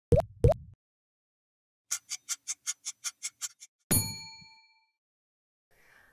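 Intro sound-effect sting: two quick rising plops, a run of about ten fast ticks at roughly six a second, then a single bell-like ding that rings out for about half a second.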